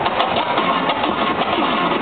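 Live band with turntables and electric guitar over a PA, playing a loud, dense passage with a rapid pulsing texture and gliding pitches.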